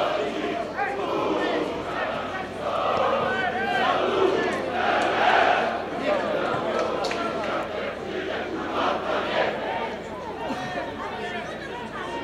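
A crowd of football supporters shouting together, many voices at once, swelling loudest about four to five seconds in and easing off near the end.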